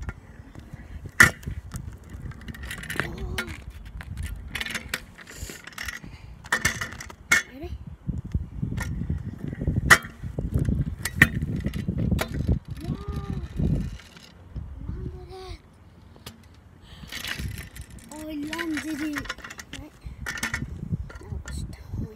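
Stunt scooter on tarmac: knocks and clatters from the deck and bars, with a low rumble of the wheels rolling in the middle stretch. The loudest knocks come about a second in and again around ten seconds.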